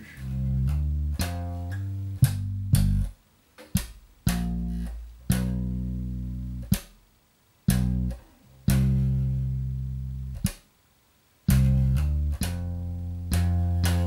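Electric bass guitar played in slap style, slowly and in short phrases: low notes struck with sharp percussive attacks, ringing and then cut off, with short silences between phrases. It is a funky slap line in G minor broken down note by note, with hammered-on notes and muted ghost-note clicks.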